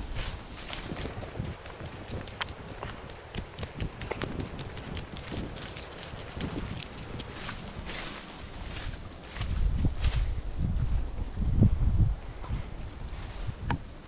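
Footsteps in sandals on dry gum-leaf litter and then a sandy track, an irregular run of short scuffs and crunches. Wind buffets the microphone with a low rumble for a few seconds near the end.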